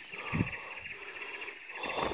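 Steady, high-pitched, rapidly pulsing chorus of forest insects and birds, with a short low thump about half a second in.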